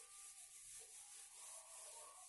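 Faint rubbing of a board eraser wiping chalk off a blackboard.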